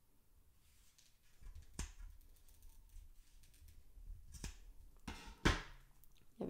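Large steel scissors snipping through wound yarn between two cardboard pompom rings: a few separate sharp clicks of the blades closing, with some handling rustle. The loudest click comes near the end.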